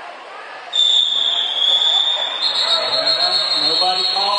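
A long, shrill signal tone sounds about a second in and steps slightly higher partway through, over the voices of the crowd; it signals the end of play as the clock runs out for halftime.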